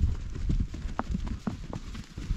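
Hooves of several walking horses clopping on dry, stony ground, an irregular patter of knocks over a low rumble.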